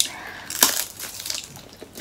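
Crispy lechon belly skin crunching as it is bitten and chewed: a few sharp crackles at the start and about half a second in, then smaller irregular ones.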